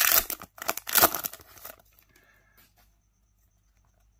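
Plastic wrapper of a trading-card pack being torn open by hand: two loud tearing rips in the first couple of seconds, followed by faint crinkling.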